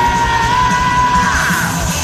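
A man belting one long, high sung note over a power metal backing track. He slides up into the note at the start and holds it for over a second before it breaks upward and fades.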